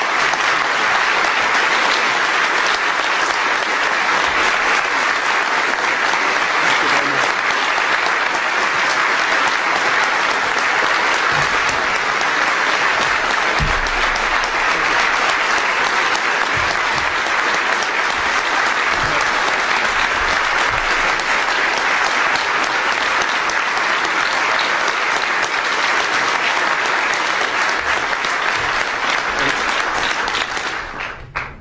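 Audience applauding, long and steady at a loud, even level.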